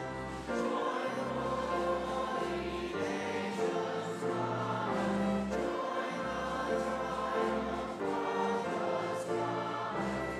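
Mixed church choir singing a Christmas cantata, accompanied by strings with a low bass line under the sustained chords.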